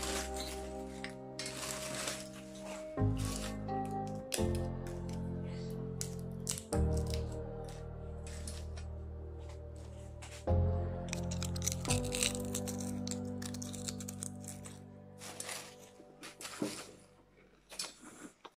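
Background music with held chords changing every few seconds, fading near the end. Over it, the dry crackling and crunching of crisp oil-free potato chips being stirred and broken by hand in a metal bowl.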